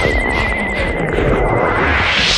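Closing seconds of a dark psytrance track: a low throbbing electronic rumble and noise under a high, wavering synth tone, with a rising noise sweep starting near the end.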